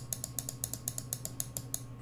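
Computer mouse scroll wheel ticking rapidly, a quick even run of small plastic clicks, about eight a second.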